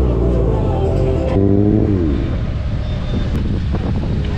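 Sport motorcycle engine running under the rider, its revs wavering and then dropping about halfway through as the bike slows, then running rough at low revs.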